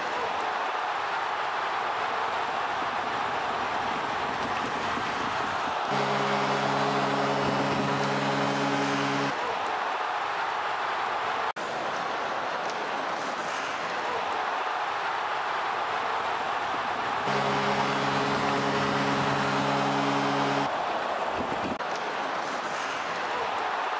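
Steady din of a large arena crowd at an ice hockey game. A held chord of several low tones sounds over it twice, for about three seconds each time, about six seconds in and again about seventeen seconds in.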